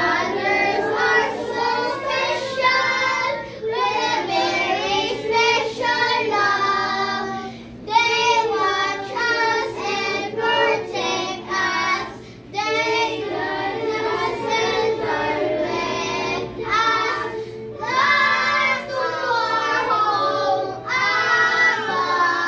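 A group of young children singing an action song together, phrase after phrase with a few short breaks between lines.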